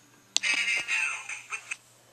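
A sharp tap, then about a second and a half of music with singing from an iPad's small speaker that cuts off suddenly.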